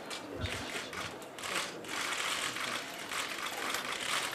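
Many press cameras' shutters clicking rapidly and overlapping, with a brief low thump about half a second in.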